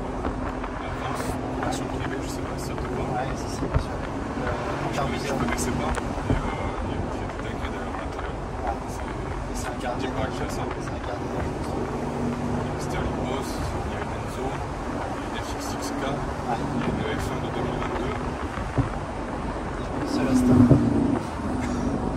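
Aston Martin DB11 Volante's twin-turbo V8 running on the move with the roof down, a steady engine note under wind and road noise that shifts in pitch from time to time and grows louder near the end.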